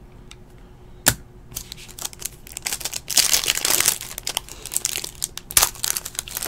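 A trading-card pack wrapper being crinkled and torn open by hand, with a single sharp click about a second in.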